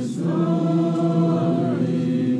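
A group of people singing together in chorus, holding one long note for about a second and a half before moving on.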